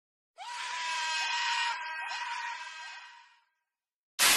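Logo-intro sound effect: a harsh, scream-like cry held on one steady high pitch, with a few short upward slides. It comes in about half a second in and fades out before the end.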